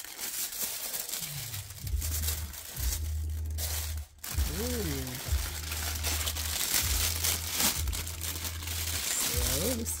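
Tissue paper and a clear plastic bag crinkling and rustling as they are handled and a leather ankle boot is pulled out of them, with a short hummed voice sound about halfway through.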